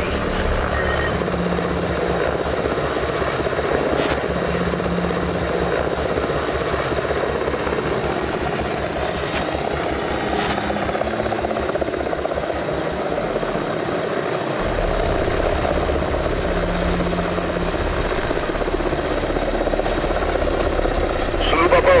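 Military transport helicopter running steadily, its rotor beat pulsing at the low end under a steady engine noise. The low pulsing thins out briefly about two-thirds of the way through, then the steady rumble returns.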